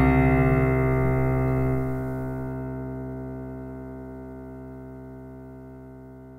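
Music: the song's closing chord, held on keyboard, slowly fading away, its upper notes dropping out about two seconds in.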